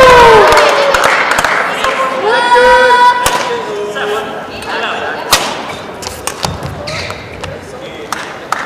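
Badminton rally: a shuttlecock struck by rackets with sharp cracks, a few seconds apart in the second half. Before it, a voice calls out with a held, high-pitched shout.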